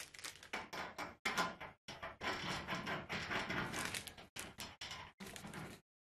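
Hands handling a chrome beer-tap handle and its plastic bag at a stainless steel flow-control tap: a run of irregular rustles, clicks and light knocks.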